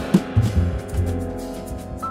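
Instrumental jazz from a piano, bass and drum-kit trio: low bass notes under held piano tones, with scattered cymbal and drum hits.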